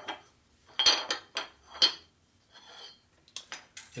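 Short pieces of square steel tubing clinking and knocking against the metal mill table and angle plate as they are set down and picked up: about five sharp metallic knocks with brief ringing in the first two seconds, then a faint scrape and a few lighter clicks.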